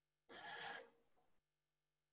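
Near silence with one short, faint breath from the presenter, about half a second long, starting about a third of a second in.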